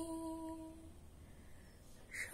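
A woman's voice holding one long, steady sung note with no accompaniment, fading out just under a second in. It is the end of a line of a Bengali patriotic song.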